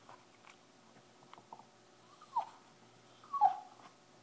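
Small dog whimpering, two short whines with the second louder near the end: it is unhappy at being kept sitting in its bath.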